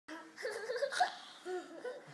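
Young boys laughing with high-pitched voices, loudest about a second in.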